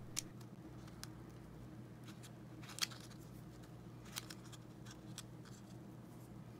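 Faint scattered clicks and light scraping of a small flathead screwdriver working in the seam of a plastic car key fob shell as it is pried apart, the sharpest click a little before the middle.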